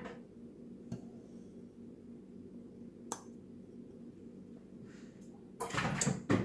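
Sugar poured from a glass bowl into a metal mesh sieve: quiet handling with two light clinks, about one and three seconds in, and a louder brief clatter just before the end.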